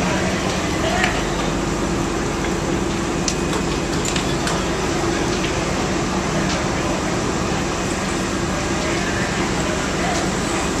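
Fire engines running at a fire scene: a steady low engine hum under a dense wash of noise, with indistinct voices in the background.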